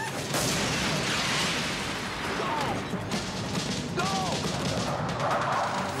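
Film action-scene sound effects: a loud, sustained rushing roar that starts just after the opening, like a blast and air tearing through an airliner cabin, with a few short cries and music mixed in.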